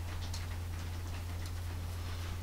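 Faint, light clicks of small metal airbrush parts being handled and fitted together on a Harder & Steenbeck Evolution airbrush, over a steady low hum.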